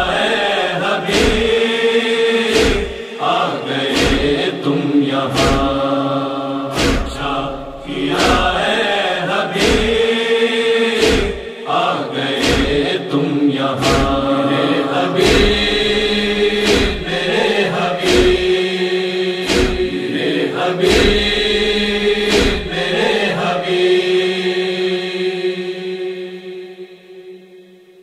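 Chorus of voices chanting a wordless refrain of a Muharram noha over a steady beat of matam chest-beating strikes, a little more than one a second. The strikes stop about 23 seconds in; the voices hold a final note and fade out near the end.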